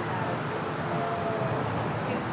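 Outdoor street ambience: a steady rush of road traffic noise, with no distinct events.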